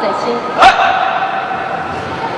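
A sharp smack about two-thirds of a second in, at once followed by a loud, high, held shout lasting about a second, over steady arena crowd noise.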